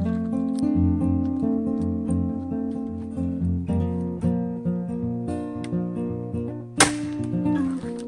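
Acoustic guitar music, plucked notes changing steadily, with one sharp click near the end.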